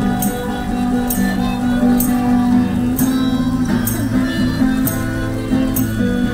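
Street performance of an acoustic guitar and a harmonica playing an instrumental passage without singing. Sustained harmonica notes sound over the strummed guitar chords, with a crisp accent marking the beat about once a second.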